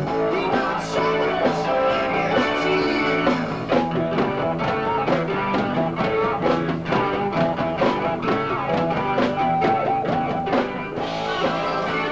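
Live rock band playing, electric guitar to the fore over drums.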